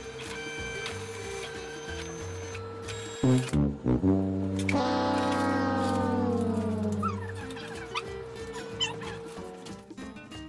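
Background music, broken about three seconds in by a couple of short loud hits and then a long comic sound effect that slides down in pitch for about two and a half seconds, a 'fail' cue marking a mistake.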